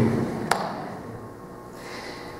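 Quiet room tone, with one sharp click about half a second in.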